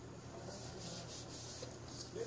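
Faint rubbing noise in soft repeated swells, over a low steady hum.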